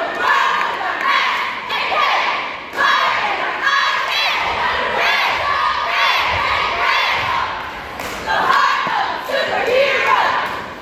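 A cheerleading squad shouting a cheer together, with a loud shout roughly every second, over crowd noise.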